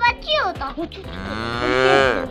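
A long, drawn-out moo that starts about a second in, rising slightly and then held, after a brief voice-like call at the start.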